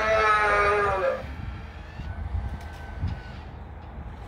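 Spirit Halloween Zombie Bait animatronic prop playing its recorded wailing cry through its speaker: one long drawn-out wail, falling slightly in pitch, that stops about a second in. After it only a low rumble and a few faint clicks remain.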